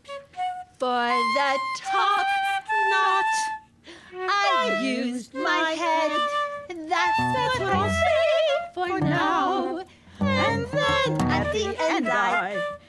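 Free improvised music: flute with wordless, wavering vocalizing in short phrases broken by brief pauses, and deeper low notes joining in about seven seconds in.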